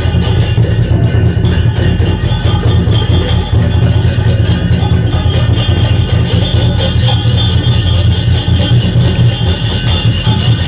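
Chinese lion dance percussion: a large drum beaten continuously with clashing cymbals, loud and unbroken, accompanying the lion's dance.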